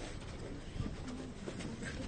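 Faint low cooing of a bird over a quiet background hubbub.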